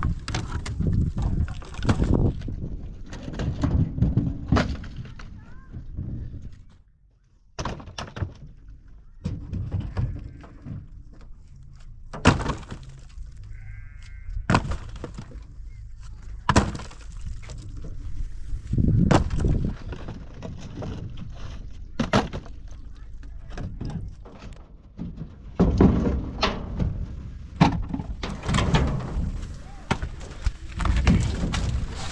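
Heavy dry firewood logs thrown out of a pickup truck's bed, landing on a woodpile and against the truck's metal bed in a long irregular series of wooden thuds, knocks and clatters.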